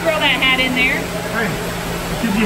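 Excited children's voices, one of them high-pitched and wavering for about half a second near the start, over a steady low hum.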